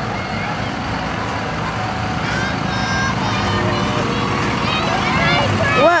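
Vehicle engine of a lit parade float running steadily as it drives past, growing a little louder toward the end, with scattered voices and shouts from the crowd.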